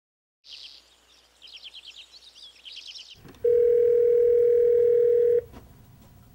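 Birds chirping in quick bursts. Then, about three and a half seconds in, a steady telephone ringback tone sounds for about two seconds and stops: a call ringing at the other end of the line before it is answered.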